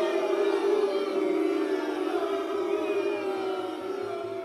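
Electronic dance music breakdown: a sustained synth chord held without drums or beat.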